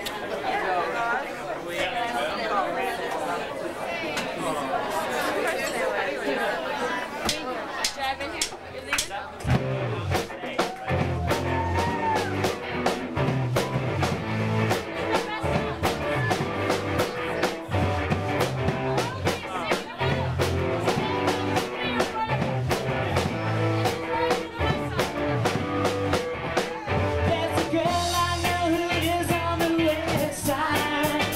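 Bar crowd chattering, then about a third of the way in a live rock band starts a song on electric guitar, bass and drums with a steady beat, and singing comes in near the end.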